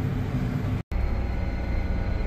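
Tractor engine running, heard from inside the cab as a steady low drone. It drops out for an instant just under a second in, then carries on.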